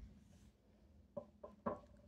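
Near-quiet room with a low thump at the start and then three faint, short taps in quick succession a little past halfway, from a fountain pen and notebook being handled on a wooden desk.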